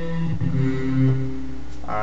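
French horn patch of the Edirol HQ Orchestral software instrument playing two low held notes, one after the other.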